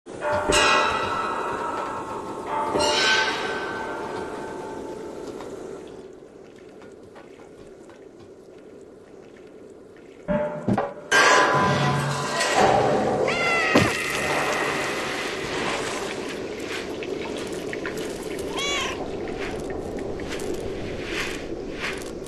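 Background music with a cat meowing several times over it, including drawn-out rising-and-falling meows about 13 and 19 seconds in. There are a few sharp knocks about ten seconds in.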